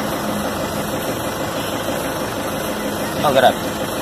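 Steady hum of a vehicle engine idling, holding an even level throughout.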